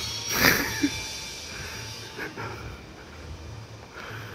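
A person's short breathy exhale, like a sigh, about half a second in, over a faint steady street background.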